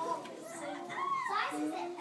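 Children's voices speaking, indistinct and overlapping.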